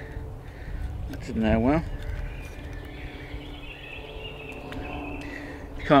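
A man's short strained vocal sound about one and a half seconds in, as he tries by hand to break a split section off a wooden billet. Faint birdsong and a low background rumble continue throughout.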